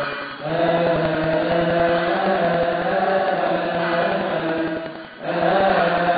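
Coptic Orthodox deacons chanting a liturgical hymn in unison, in long, drawn-out notes. The chant breaks off briefly for breath just after the start and again about five seconds in.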